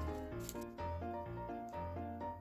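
Background music: a light keyboard tune over a bass line, its notes changing several times a second. About half a second in comes a brief crinkle of a dessert wrapper being peeled off.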